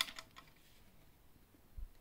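A few light clicks from the hard plastic dust bin of a cordless stick vacuum being handled, the loudest right at the start, then quiet room tone.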